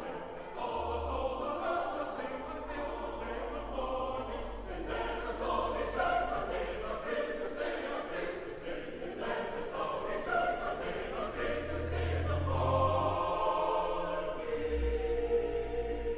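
Choral music: a choir singing over low bass accompaniment.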